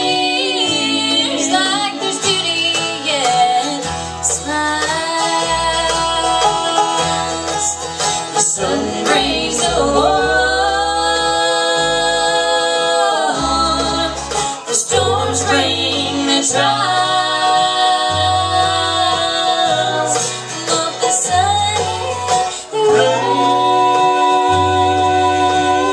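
Bluegrass band playing live: acoustic guitar, mandolin and banjo over a walking bass line, with a girl's voice and a fiddle carrying the melody in long, bending held notes.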